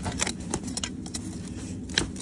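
Farrier's hand tool levering a steel horseshoe off a horse's hoof: a series of irregular sharp metallic clicks and clinks, the strongest near the end.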